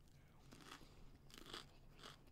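Faint crunching of a person biting into and chewing a fresh Aji Rainforest chili pepper, a few soft crunches in a row.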